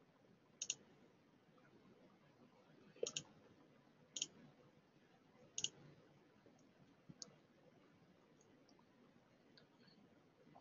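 Computer mouse clicks: about five short clicks, some in quick pairs, a second or two apart, against near silence.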